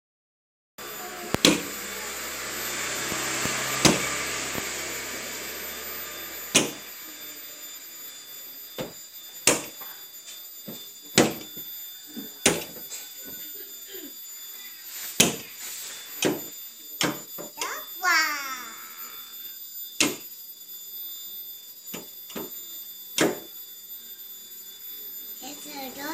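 About a dozen sharp knocks at irregular intervals, with a child's short vocal sound about two-thirds of the way through. A faint hiss runs under the first few seconds.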